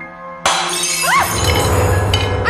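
Glass shattering with a sudden loud crash about half a second in, over soft background music.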